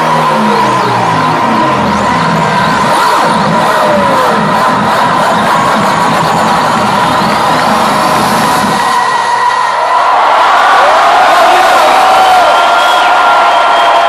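Live electronic dance music played loud through a club sound system, with a crowd cheering over it. The low bass line steps downward, then falls away about ten seconds in as the track ends, and the crowd's cheers and whoops swell.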